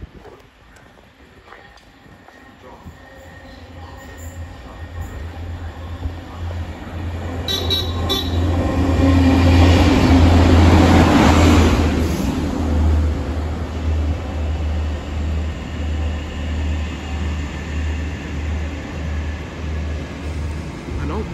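Network Rail multi-purpose vehicle (MPV), a diesel rail unit, approaching and running through the platform: a rumble of engine and wheels on rail builds to a loud peak about halfway through, then gives way to a low rumble that pulses about once or twice a second.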